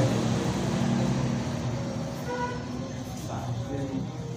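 A vehicle engine running with a steady low hum that slowly fades, with faint voices in the background.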